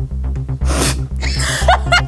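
Electronic dance music with a steady pulsing beat. About halfway through, a short burst of breathy noise cuts across it, followed near the end by a second noisy burst with short rising squeaks.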